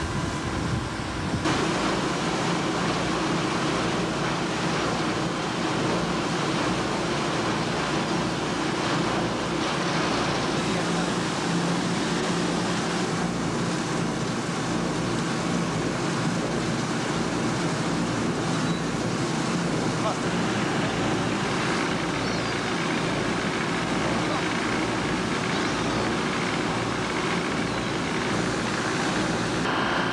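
A boat's engine running with a steady drone, under the rush of wind and water.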